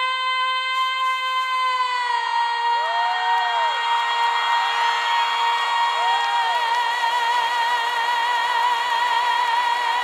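A female singer holding one long high note, steady at first and wavering with vibrato in its second half, over a crowd cheering.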